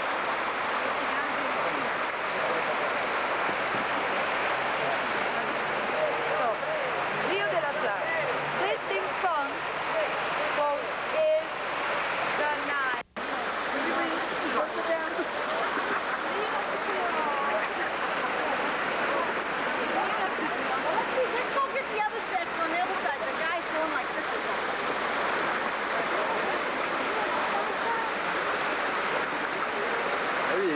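Water from a large stone fountain's jets splashing steadily into its basin, with a murmur of people's voices around it. The sound cuts out for an instant about halfway through.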